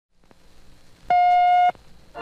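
A single steady beep about half a second long, a second in, after a faint click.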